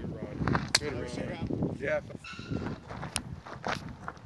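Low voices of people talking, with footsteps on a gravel path and two sharp clicks, one early and one near the end.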